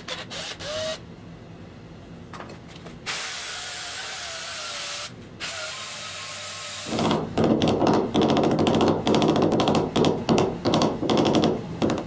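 Cordless drill spinning a wooden disc on a threaded rod: the motor runs with a steady whine in two runs, broken briefly in the middle, then from about seven seconds in a loud rough rasping comes in quick bursts as the spinning disc is rubbed against something held in the gloved hand.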